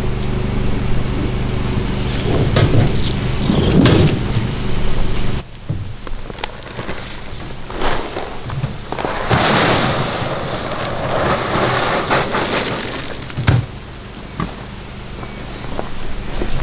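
Footsteps and the rustle of a carried feed sack over a steady low hum, then dry pig feed poured from the sack into a feeder bin: a rushing pour of a few seconds, with scattered thumps.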